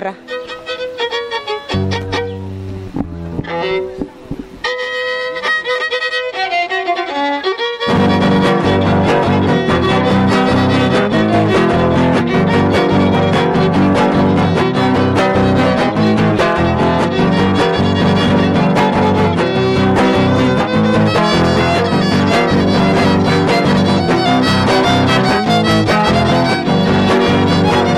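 Trío huasteco playing son huasteco: a fiddle with a jarana huasteca and a huapanguera strumming. It starts with sparse single notes, and the full trio comes in together about eight seconds in, playing steadily to the end.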